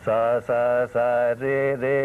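A man singing unaccompanied, solfège style: a run of five or six held notes, each about a third to half a second long with short breaks between them, beginning on the syllable "sa".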